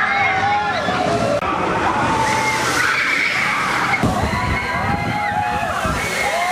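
Riders on the Krake dive coaster screaming together as the train goes over the near-vertical drop, with a rush of water noise from the coaster's splashdown.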